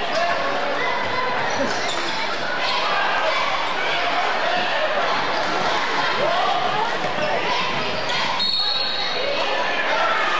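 Spectators talking in a gymnasium during a basketball game, with the ball bouncing on the hardwood court. A short high referee's whistle sounds near the end.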